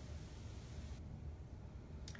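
Quiet room tone: a low steady rumble with faint hiss that drops away about a second in, and no distinct event.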